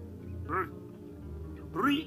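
Only speech over background music: a short spoken syllable about half a second in and another voice starting near the end, over soft sustained low music notes.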